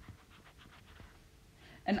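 A quiet pause holding faint stylus strokes on a tablet's glass screen and a breath in, with speech starting near the end.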